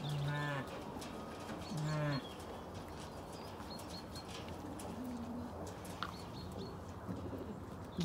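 Zwartbles sheep bleating: two steady half-second bleats about two seconds apart, then a fainter one around five seconds in, with faint bird chirps in the background.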